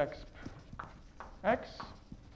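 Chalk tapping and scraping on a blackboard as it writes, a series of short sharp taps, with a brief spoken syllable about one and a half seconds in.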